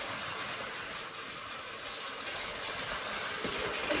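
Battery-powered Tomy Plarail toy trains, one of them the MSE Romance Car, running on plastic track with a steady whir.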